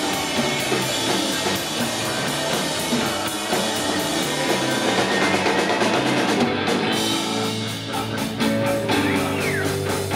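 Live garage rock band playing an instrumental passage, with electric guitar and drum kit driving it and no vocals.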